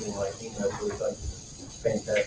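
Indistinct talking in a crowded meeting room, with a steady hiss from the recording underneath.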